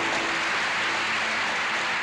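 Audience applauding at the end of a song, the band's last held notes fading out just as the clapping takes over.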